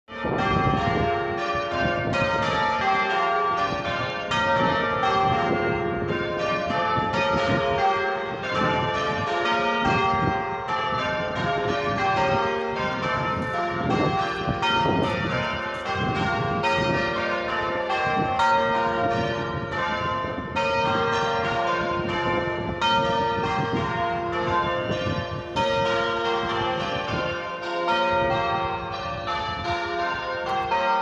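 A ring of six John Taylor & Co church bells, 14 cwt and tuned to F, being change rung: an unbroken run of strikes, each bell's tone ringing on under the next.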